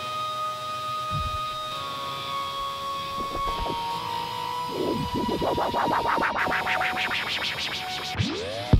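Electronic DJ mix with several steady held synth tones; from about five seconds in, vinyl is scratched on a turntable, the record pushed rapidly back and forth in quick up-and-down pitch sweeps.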